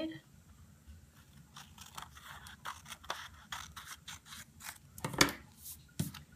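Scissors cutting a sheet of origami paper along a fold crease: a run of short, irregular snips and paper rasps, with one louder knock about five seconds in.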